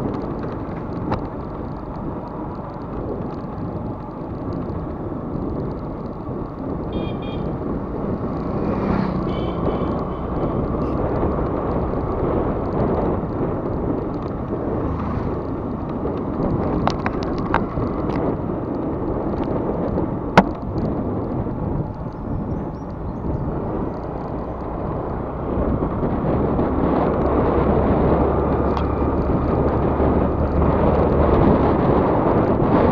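Riding noise from a moving Yamaha Ray ZR scooter, heard from a camera mounted on the scooter: steady wind buffeting the microphone over engine and road noise, growing louder in the last few seconds. A single sharp click comes about twenty seconds in.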